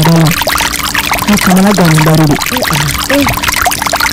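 Water pouring or running steadily as a loud, even rush, with a person's voice talking over it.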